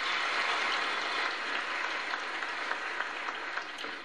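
Large congregation applauding, loudest just after the start and easing slightly toward the end.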